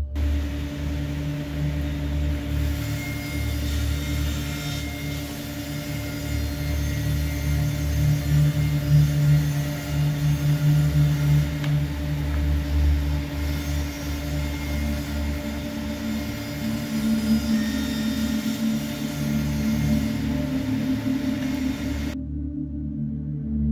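Power saws running in a wood shop: a bandsaw cutting small hardwood pieces, then a table saw cutting plywood sheets, with a steady motor hum and the hiss of dust extraction.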